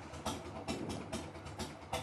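1999 Harley-Davidson Sportster 1200's air-cooled V-twin idling just after starting, a low rumble with an uneven, regular beat of about four knocks a second.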